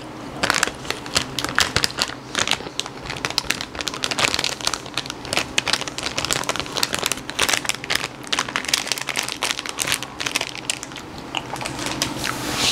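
Plastic chip bag crinkling as a hand digs into it, with chips crunched while eating, close to a lapel microphone; the crackles come irregularly and densely throughout.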